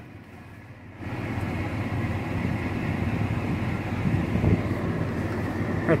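A road vehicle moving off about a second in, then running steadily, its engine hum and tyre noise on the sandy dirt road carrying on to the end.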